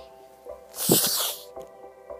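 Background music with steady held notes, and about a second in a short loud hiss lasting about half a second.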